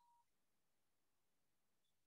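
Near silence: the recording is paused or muted.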